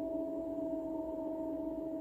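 Steady meditation drone: a few pure tones held unchanged, with no rise or fall.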